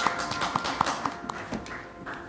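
Last held notes of a church keyboard accompaniment dying away, with a scattered run of sharp taps over them.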